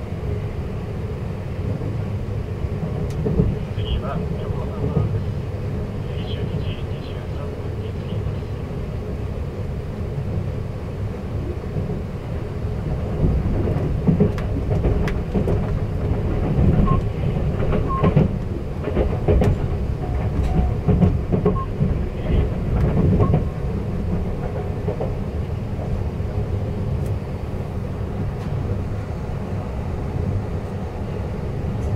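Running noise of a 285-series sleeper train, heard from inside a compartment: a steady low rumble of wheels on rail. Midway a louder stretch of about ten seconds brings rapid clattering clicks of wheels over rail joints and points, while another train runs alongside.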